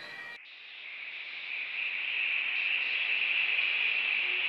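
Hissing synthesized noise swell opening an electronic music track: it starts abruptly about half a second in, grows louder over about two seconds, then holds steady.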